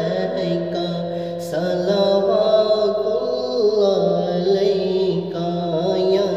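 A man singing a devotional naat (salam) into a microphone, drawing out long held notes that slide from pitch to pitch without clear words.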